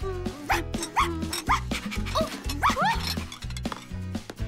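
Background music with a steady beat, over which a cartoon puppy yips several times in quick succession in the middle of the stretch.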